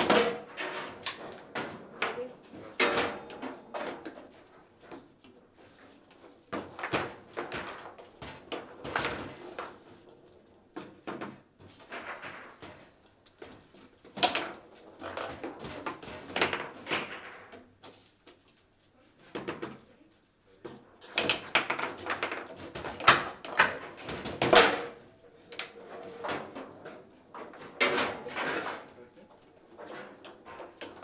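Table football play: bursts of sharp clacks and knocks as the ball is struck by the plastic players and bounces off the table walls, with rods banging against the table sides, broken by short pauses. The ball goes into a goal twice.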